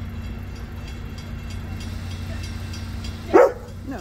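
Freight train rolling past with a steady low rumble and faint regular wheel clicks. A dog gives one short, loud bark about three and a half seconds in.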